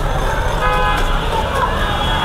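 Road traffic running steadily with a low rumble, a vehicle horn sounding briefly about two-thirds of a second in, and voices in the background.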